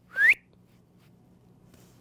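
A man whistles one short upward-gliding note, about a quarter of a second long, just after the start. After it there is only faint room tone with a low hum.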